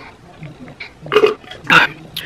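A woman burping after gulping down a jar of salt water: two short bursts about a second in, the second louder.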